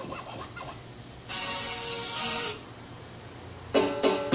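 Short snippets of recorded gospel music being skipped through: one plays loudly for about a second and is cut off abruptly, and another starts suddenly near the end.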